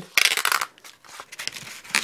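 Emery cloth torn off a taped buff stick: one short ripping rasp, followed by faint handling rustles and a light tap near the end.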